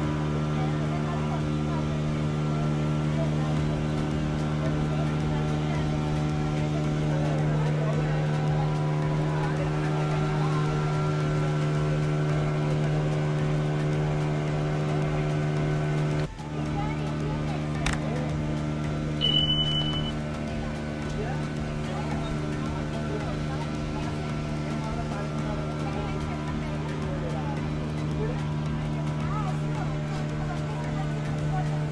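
Passenger ferry boat's engine running at a steady cruising drone while under way. About two-thirds through there is a short click and then a brief high beep.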